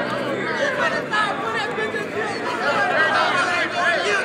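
Several men talking loudly over one another: overlapping, animated crowd chatter with no single clear voice.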